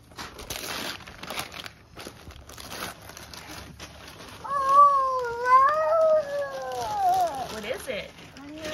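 Tissue paper and gift wrap rustling and crinkling as a gift box is unpacked. About halfway through, a long, wavering high-pitched call rises and falls for about three seconds.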